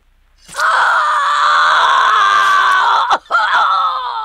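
A person's long, loud scream starting about half a second in and breaking off just after three seconds, then a second cry that falls in pitch near the end.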